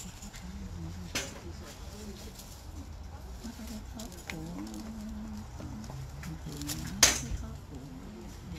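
Low voices talking in the background, with a sharp click about a second in and a louder sharp crack about seven seconds in.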